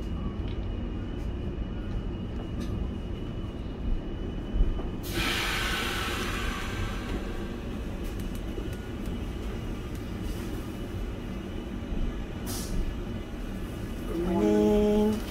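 Passenger train carriage rolling slowly along the rails, heard from inside the car: a steady low rumble, with a burst of hissing about five seconds in that fades over a couple of seconds and a shorter hiss near the end.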